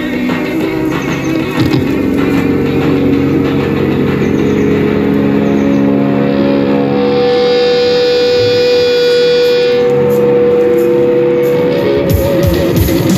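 Intro of an electric guitar piece: layered sustained droning tones with no beat. A brighter, higher layer comes in about six seconds in and fades out near ten seconds, while a single held note sounds through the second half.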